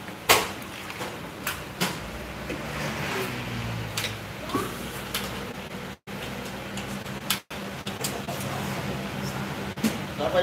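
Kitchen clatter: a sharp knock about a third of a second in, then scattered smaller clicks and knocks of pot lids and utensils on a table, over a steady low hum. The sound cuts out briefly twice in the second half.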